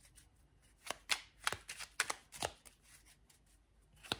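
A deck of tarot cards being shuffled by hand, with a few short, sharp card strokes spaced about half a second apart, then quieter handling near the end.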